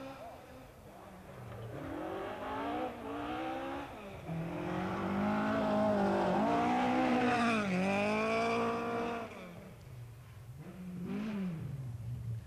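Rally car engine revving hard through its gears as the car passes close, the pitch climbing and dropping back at each gear change. It is loudest in the middle, then fades, and another engine rises and falls briefly near the end.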